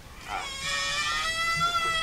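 A high-pitched animal call, held about a second and a half and rising slightly in pitch.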